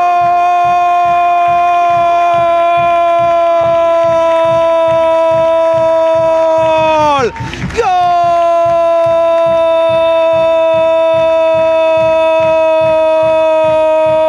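A football commentator's long drawn-out goal cry, "gooool", held on one steady pitch for about seven seconds. It breaks with a falling pitch for a quick breath, then carries on a little lower. A steady low beat of about three strokes a second runs underneath.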